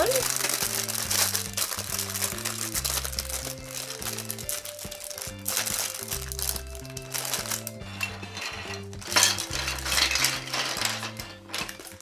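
A clear plastic bag crinkling as it is opened and emptied, with plastic Duplo bricks clattering onto a table, in irregular bursts over background music.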